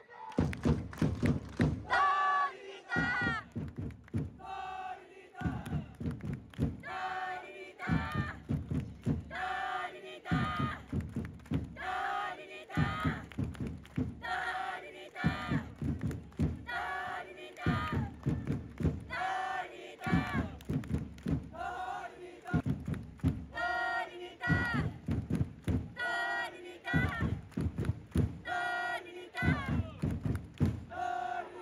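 Football supporters chanting in unison with drums beating under the chant, one short phrase repeated about every two and a half seconds.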